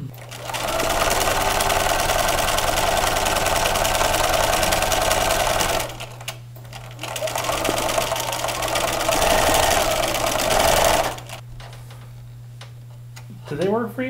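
Bernina sewing machine stitching in two runs, the first about five seconds long and the second about four, with a short pause between them.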